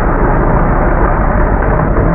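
Jeep engine running hard as the Jeep powerslides through mud, its tyres spinning and spraying mud; loud and steady.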